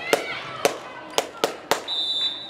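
Sharp hand claps, about five, with girls' voices calling in a gym hall, then near the end one steady referee's whistle blast, the signal to serve.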